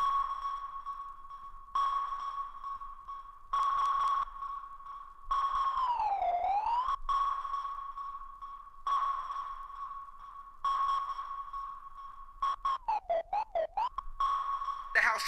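A sonar-like electronic ping from a house record on vinyl: one steady high tone that starts afresh about every two seconds and fades. Around the middle the whole tone dips in pitch and comes back up, and near the end it is cut into rapid short stutters with swooping pitch.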